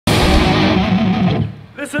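Loud distorted electric guitar from a live band, a held, ringing sound that breaks off about one and a half seconds in.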